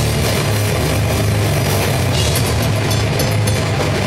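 Live heavy rock band playing loud: electric guitar, bass guitar and drum kit, with a heavy, booming low end and a run of cymbal hits in the second half.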